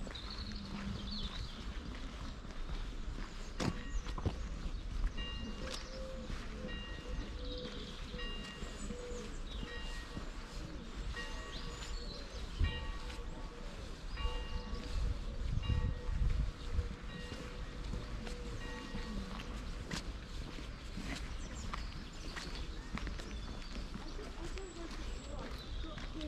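Outdoor ambience on a walk: a steady low rumble of wind on the microphone, faint voices, and occasional footsteps on a dirt path. Short, evenly repeated tones come and go through the middle.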